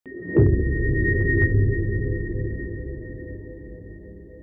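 Synthesised logo intro sting: a deep hit about half a second in, over steady high ringing tones, then a low rumble that slowly fades away.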